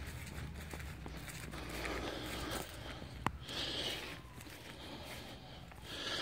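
Footsteps through grass with the rustle of a hand-held phone being carried, and one sharp click about three seconds in.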